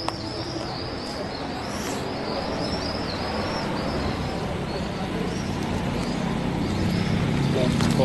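Small birds chirping over and over, short high chirps coming several times a second, over a steady murmur of voices and street noise.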